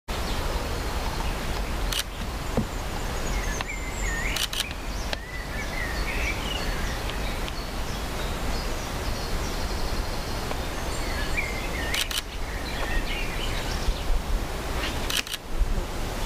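Woodland ambience: a steady low rumble of wind on the microphone, with a few small birds calling twice, near four seconds in and again around twelve seconds, and a few faint sharp clicks.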